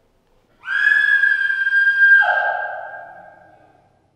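A high, steady whistle-like tone starts suddenly about half a second in. A lower note joins it about two seconds in, and both fade away before the end.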